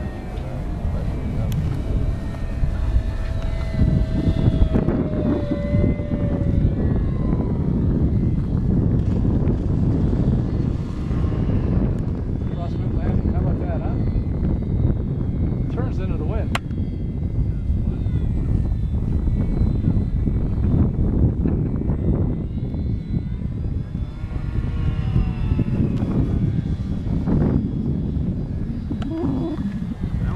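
Wind rumbling on the microphone, with the electric motor and propeller of a radio-controlled E-flite Apprentice trainer plane whining faintly in flight, its pitch falling slowly over the first several seconds.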